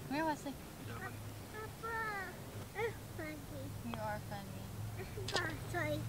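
A toddler babbling in a string of short, high-pitched wordless calls that rise and fall, over a faint steady low hum.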